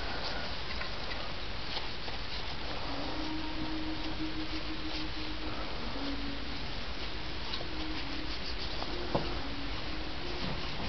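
Quiet handling sounds of a plastic window-switch panel being picked up and wiped down with an alcohol-dampened paper towel: soft rubbing and faint taps over a steady hiss. A faint steady hum comes in about three seconds in, and there is one sharp click near the end.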